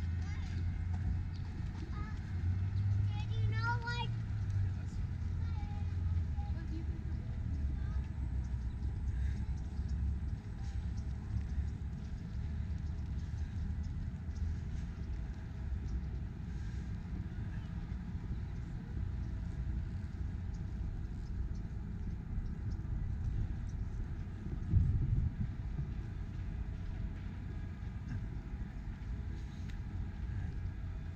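Outdoor city park ambience: a steady low rumble of traffic, with a brief voice from a passer-by a few seconds in and a short low thump late on.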